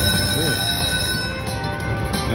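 Dollar Storm slot machine giving out steady held electronic tones over the dense background noise of a casino floor, with faint voices in the din.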